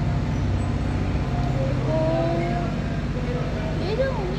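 A steady low mechanical hum, like an engine or motor running, with faint distant voices over it.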